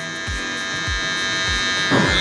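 Electric hair clipper buzzing steadily while trimming hair around the ear, over background music with a steady beat.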